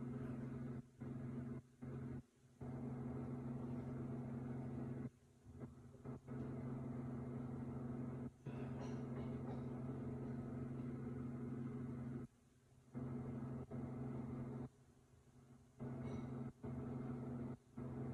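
A steady low electrical hum with faint hiss, cutting out abruptly and coming back about ten times.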